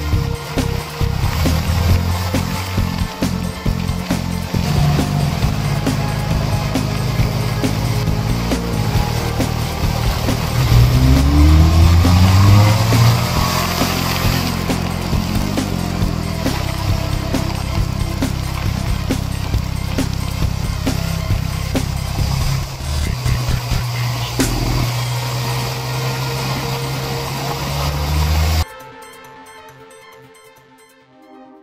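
Benelli TRK 502's parallel-twin engine running under way uphill, revving up about eleven seconds in. The sound cuts off suddenly shortly before the end.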